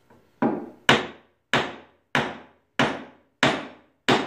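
Wooden mallet striking the top of a chrome trailer ball hitch, knocking its shank down into a hole in a wooden board. Six sharp, evenly paced blows about every 0.6 s, each a short knock that dies away quickly.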